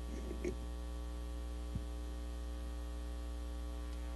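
Steady electrical mains hum on the sound feed, with a brief faint voice about half a second in and a single soft knock near the middle.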